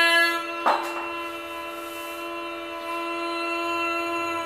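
A steady drone note held on one pitch with many overtones, the tonic drone of a Carnatic lesson sounding on its own between sung phrases. A brief rustle cuts across it just under a second in.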